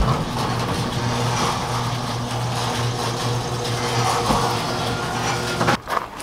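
A steady low motor hum with a hiss over it, holding level throughout and cutting off abruptly just before the end.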